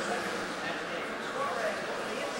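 Indistinct chatter of several people talking in a room, a steady hubbub with no single clear voice.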